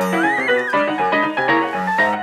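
A horse's whinny over piano music. The whinny comes right at the start, rising then falling in pitch and lasting under a second, while the piano keeps a steady bouncing beat.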